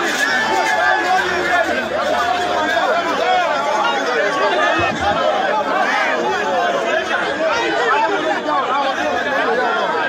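A crowd of many voices talking and calling out at once in a continuous, dense babble.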